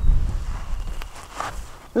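Footsteps on dry, stony garden soil and clothes rustling as a person walks over and crouches, with a low rumble on the microphone that fades during the first second.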